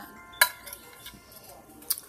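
Spatula tapping and clinking against a glass baking dish while pieces of cooked ribeye are pulled apart: a sharp click early on and another near the end, with a few lighter taps between.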